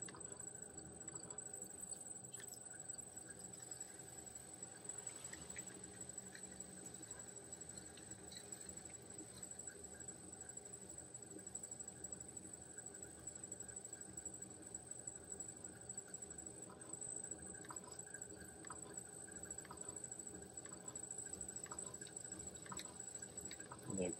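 Faint steady hum of an electric potter's wheel spinning, with soft wet sounds of hands pressing and shaping clay on it and a few light clicks.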